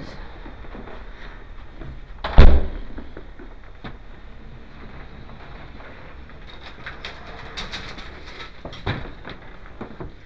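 A door shuts with one loud, heavy thud about two seconds in. Later a run of light metallic clicks and rattles, ending in a sharper knock near the end, comes as a collapsible lattice gate, likely an elevator's, is drawn by hand.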